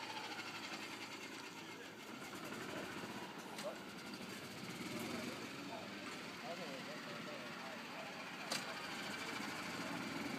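A golf club striking the ball on a tee shot: one sharp crack about eight and a half seconds in, with a fainter click about three and a half seconds in, over a steady outdoor background.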